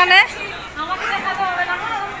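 Only speech: people chatting, with more than one voice.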